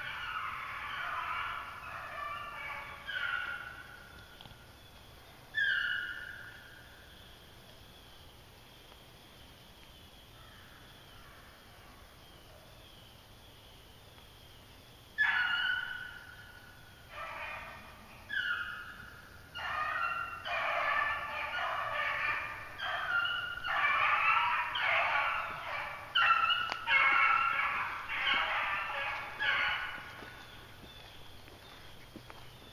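A pack of young beagles baying on a rabbit's trail, drawn-out calls that fall in pitch. The calls come and go at first, break off for several seconds in the middle, then rise to a near-continuous chorus over the last ten seconds.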